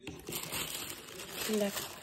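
Tissue paper crinkling and rustling as it is folded back inside a cardboard shoe box, with a short voiced sound a little past halfway.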